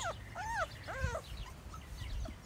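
Bullmastiff puppies whining: about three short, high, arching whines in the first second or so.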